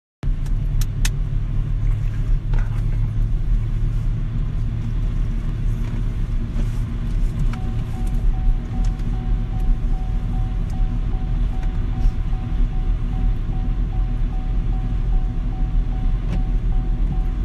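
Low, steady road rumble of a car driving, heard from inside the cabin. From about halfway, a quick, evenly repeating beep at one pitch runs over it.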